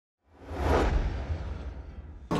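Whoosh sound effect of an animated logo intro: a rushing swish over a deep rumble that swells up a quarter second in, peaks quickly and slowly fades away.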